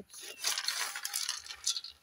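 Roasting palm kernels rattling and clinking against the metal pot in several short bursts as they are stirred with a wooden spatula. The kernels are at the stage where their oil is beginning to come out.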